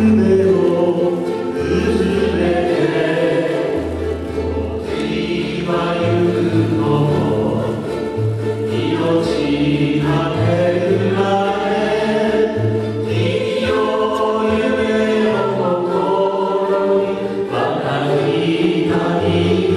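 Live ukulele ensemble playing a slow ballad over a bass line, with voices singing together.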